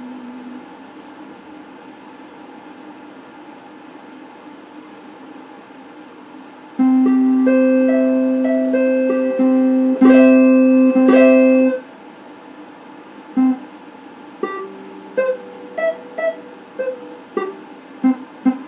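Electric guitar played solo. After several quiet seconds with only a faint steady hum, a loud chord rings out and is held for about five seconds, re-struck a few times. Then come separate single picked notes, one or two a second.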